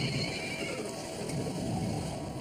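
Storm sound effects: a low rumble of wind and rain, with a high, wavering cry that rises and falls in the first second.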